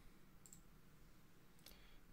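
Near silence: room tone with a couple of faint clicks.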